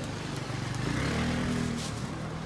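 A motor scooter's small engine passing close by, its sound swelling to its loudest in the middle and dropping away near the end.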